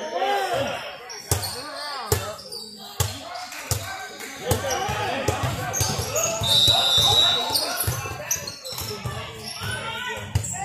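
Basketball bouncing on a hardwood gym floor during play: a run of sharp, echoing thuds from dribbling and footwork. Voices call out across the hall, and a brief high steady squeak sounds about six and a half seconds in.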